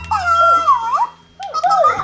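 Lil' Gleemerz light-up toy making high-pitched cooing, whimpering creature sounds: a wavering, gliding call of about a second, then a second shorter one near the end.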